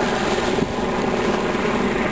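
A steady engine drone holding one pitch, with a constant rushing noise over it.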